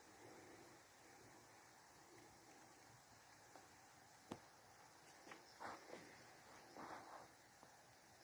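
Near silence, with one sharp click about four seconds in and a few soft crunches of footsteps on dry forest leaf litter in the second half.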